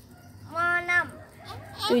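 A young child's voice calling out once, a short held vowel about half a second in, followed by the start of speech near the end.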